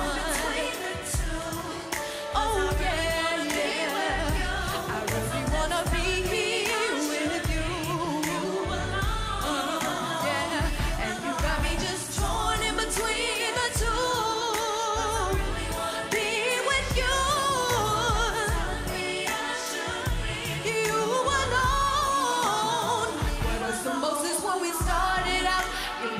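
A woman singing an R&B song live into a microphone over backing music with a steady low beat.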